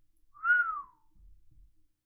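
A single short whistle-like note, rising slightly and then falling in pitch, lasting under a second.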